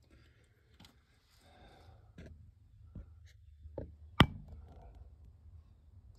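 Faint rustling handling noise with a few scattered soft clicks and one sharp click a little past four seconds in.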